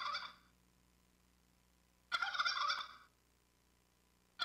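Wild turkey gobbling, a recording played back from a phone: the tail of one gobble right at the start, then a full gobble of about a second starting about two seconds in.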